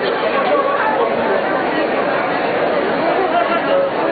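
Crowd chatter: many people talking at once in a steady babble, with no music playing.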